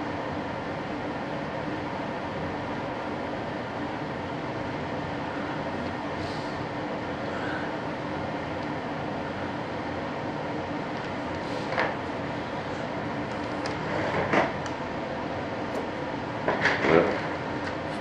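Steady machine drone with a constant low hum, as from a running fan or pump in a workshop. A few faint clicks and knocks of handling come in the second half.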